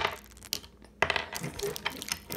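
Small clicks and rattles of plastic toy trains being handled, one click about half a second in and a quick run of them from about a second in.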